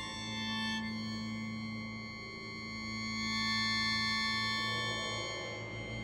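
Sheng and orchestra playing slow, sustained chords of held tones, contemporary concert music; the sound swells about halfway through as new high notes enter.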